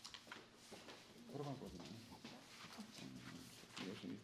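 Quiet room: faint low murmured voices, with papers and folders being handled on a table.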